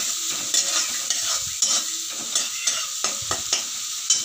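Crushed garlic and green chilli sizzling steadily in hot oil in a metal kadhai. A metal spatula stirs them, with scattered scrapes and light knocks against the pan.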